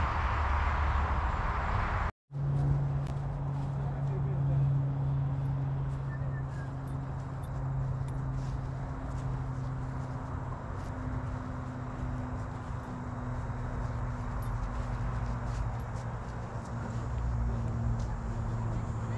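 A steady low hum with one higher overtone, over outdoor background noise. The sound cuts out completely for a moment about two seconds in, and the hum starts right after.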